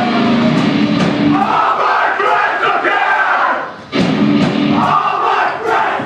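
Hardcore band playing live in a small club: distorted guitars and drums under loud shouted vocals, with many voices shouting together. Just before four seconds in the music drops out for a moment, then slams back in with a hit.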